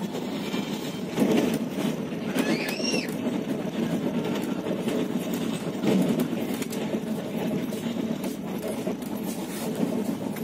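Passenger train running along the track, heard from inside the coach: a steady rumble with many small clicks and rattles. A brief high whistle-like sound rises and falls a little under three seconds in.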